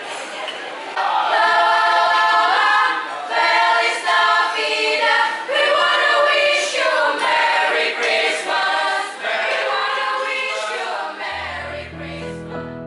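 Youth choir singing a cappella, many voices together, louder from about a second in. Near the end, instrumental music with long held notes comes in.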